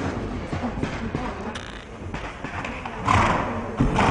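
A horse's hooves thudding on soft arena footing as it jumps a fence and canters on. The thuds are irregular, with the loudest noisy thud about three seconds in.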